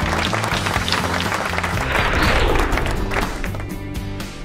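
Background music with held low bass notes over a steady wash, easing slightly in level near the end.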